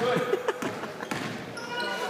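Basketball dribbled on a hardwood gym floor, a few bounces about half a second apart.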